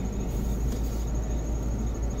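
Crickets trilling steadily in a high, finely pulsing tone over a low, steady rumble, heard from inside a car cabin.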